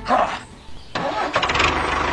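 Tractor engine starting about a second in, then settling into an even, regularly beating idle.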